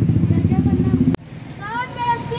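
A street vehicle's engine running with a fast, even pulse, cut off abruptly a little over a second in; then a voice starts speaking.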